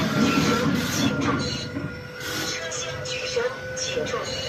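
Hydraulic folding rear ramps of a low-bed semi-trailer being lowered: the hydraulic system runs with a steady thin whine, louder in the first half and easing off about halfway through.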